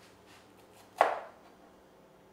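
Kitchen knife cutting vegetables on a cutting board: a few light taps, then one sharp chop against the board about a second in.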